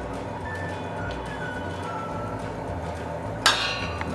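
Soft background music with a faint wandering melody, broken about three and a half seconds in by a single sharp clink with a brief ring.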